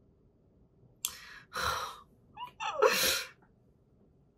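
A woman sneezing: a sharp intake of breath about a second in, then two sneezes about a second apart.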